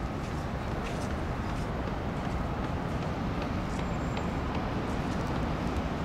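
Steady outdoor rumble of city traffic noise, even in level throughout.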